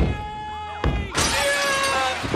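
Two thuds against a pane of glass, the second just under a second in. Then, a little past a second in, the glass shatters as a man crashes through it, with music under it.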